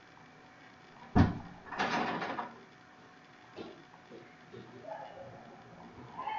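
A single sharp knock about a second in, followed shortly by a brief rattling scrape lasting under a second, then a few faint clicks.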